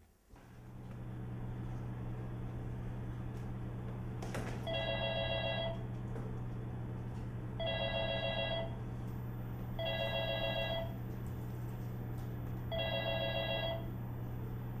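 Electronic telephone ringer sounding four times, each ring about a second long with a couple of seconds between, over a steady low hum that starts just after the beginning.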